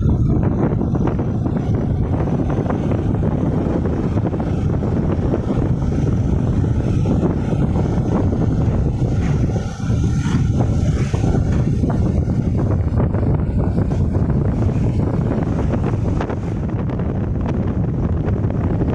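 Wind buffeting the microphone of a moving vehicle, over its engine and road noise, steady and loud throughout.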